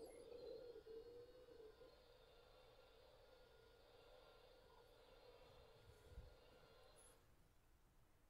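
Faint recording of a dentist's drill played back over loudspeakers: a steady whine with one main tone and fainter higher tones above it, stopping about seven seconds in.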